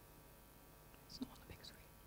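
Near silence, with brief faint whispering a little past the middle.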